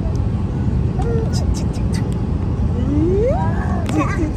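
Steady airliner cabin drone, with a short voice squeal that rises in pitch near the end as a baby is lifted into the air.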